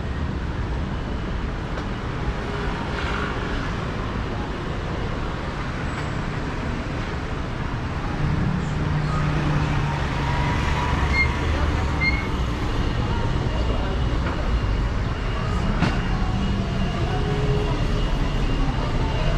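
Busy street ambience: passing motor vehicle traffic with a low engine rumble that grows louder about eight seconds in, over a background of people's voices.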